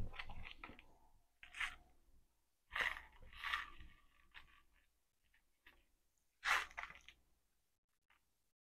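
A candy wrapper crinkling and candy being crunched and chewed, in a few short, separate bursts with quiet between them.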